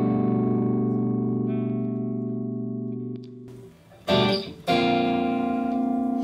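Clean electric guitar chord through a Hughes & Kettner Grandmeister Deluxe 40 tube amp, ringing and fading slowly, then cut off abruptly a little past halfway as the amp's built-in noise gate closes. Two more chords are strummed near the end and ring on.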